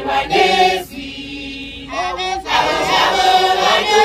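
A group of women singing together in a church chant, with a brief lull near the middle before the voices come back in full.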